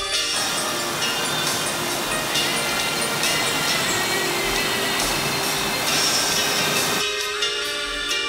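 A small mountain brook rushing loudly over a rocky cascade, a steady, dense water noise with background music faintly beneath it. The rush cuts off suddenly about seven seconds in, leaving only the music.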